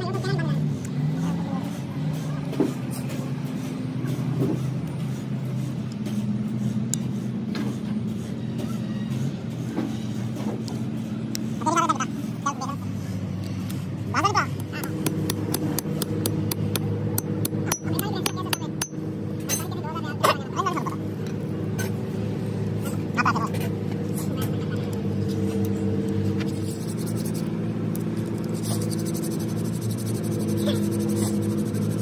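Background music of sustained chords that change every several seconds, with a few short voice-like calls. Under it are light clicks and taps, thickest past the middle, as a hammer seats a new seal in a hydraulic cylinder housing.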